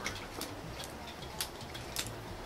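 Faint, irregular metallic clicks, about one every half second, over a low hiss: a spatula tapping a wok as pad thai is stir-fried.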